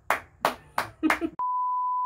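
One person's hand claps, four of them about three a second, then the sound cuts suddenly to a steady test-tone beep that goes with the colour-bar test pattern.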